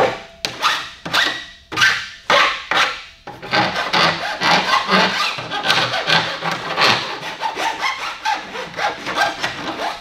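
Hand file rasping across the cut end of a plastic vent pipe, deburring and bevelling the edge. The strokes come about two a second at first, then quicker and closer together from about three seconds in.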